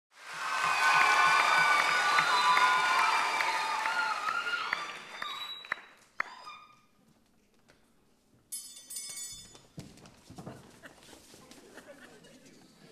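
Audience cheering and applauding, loudest over the first four seconds and dying away by about six seconds. After that come quieter stage sounds, with a brief high shimmer about nine seconds in.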